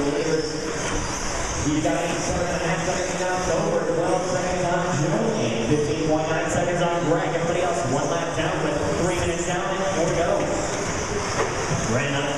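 Indistinct talking that goes on throughout, over a steady high hiss.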